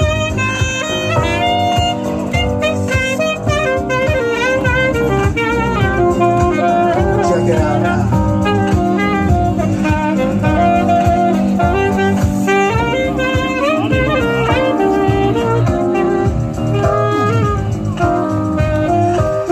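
A saxophone playing a jazzy melody live over electric keyboard accompaniment.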